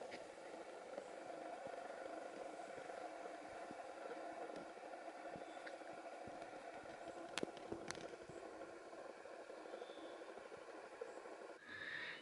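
Faint, steady background noise with two light clicks about half a second apart, a little past the middle.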